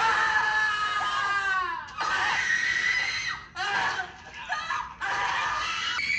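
Shrill, drawn-out screams of agony: several long cries in a row, each falling in pitch.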